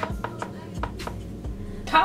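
A run of irregular sharp taps or knocks, a few a second.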